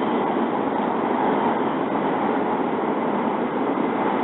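Steady running noise inside the passenger cabin of a W7 series Hokuriku Shinkansen train travelling between stations: an even, unbroken rush.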